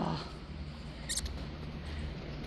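Low steady room hum with one brief, sharp high-pitched sound about a second in.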